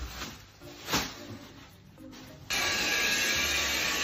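A cordless stick vacuum cleaner switches on about two and a half seconds in and runs steadily. Before that there is faint rustling over soft music.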